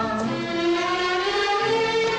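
Hindi film song playing: voices sing long held notes together over instrumental backing.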